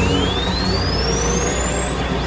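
Experimental electronic noise music: a thin high tone rises slowly and steadily in pitch over a dense, crackly noise bed with low droning tones.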